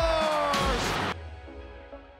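Arena crowd cheering a goal, with music playing over it. The sound cuts off abruptly about a second in and gives way to quieter background music.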